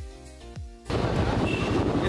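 Background music with deep, falling bass hits, cut off abruptly about a second in by loud road noise: a vehicle engine running close by, with wind on the microphone.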